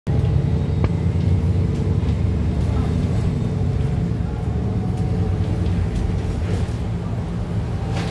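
Cabin noise inside a 2020 Nova Bus LFS hybrid-electric city bus under way: a steady low rumble and hum from the drivetrain and road, with a single click just under a second in.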